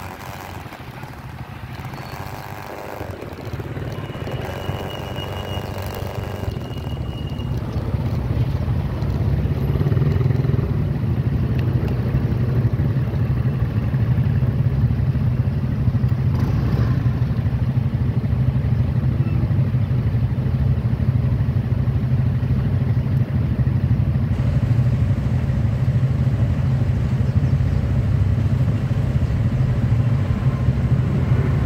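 Motorcycle engines idling in stopped traffic: a steady low engine hum that grows louder over the first ten seconds, then holds steady.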